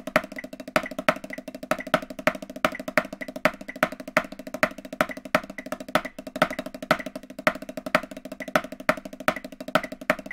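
Snare drum played fast with sticks in swung triplets with improvised stickings, a continuous run of strokes with louder accents standing out among quieter ones. A metronome clicks on beats two and four.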